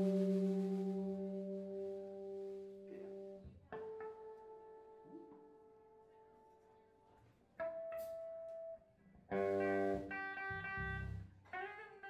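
Electric guitar being tuned through an amp between songs: single notes and chords struck one at a time and left to ring and fade, about four strikes a few seconds apart.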